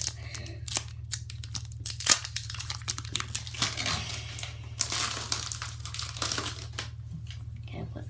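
A Pokémon Generations booster pack's foil wrapper being torn open and crinkled: a run of sharp crackles and rips, the loudest about two seconds in. A steady low hum runs underneath.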